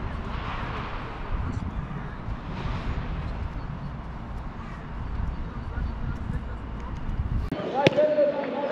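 Steady low rumble of wind on the microphone, with faint, indistinct voices from a team huddle on a football pitch. Near the end a single sharp thud of a football being kicked.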